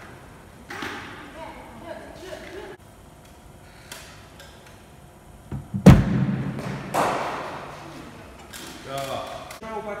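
Cricket ball impacts in an indoor net: a loud thud about six seconds in and a second about a second later, each echoing in the hall.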